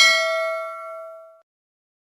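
A single bright bell ding sound effect, the notification-bell chime of a subscribe animation. It rings with several clear tones and fades away about a second and a half in.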